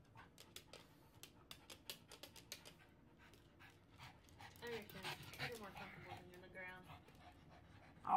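Dogs panting quietly in quick short breaths, with faint voice-like sounds in the middle.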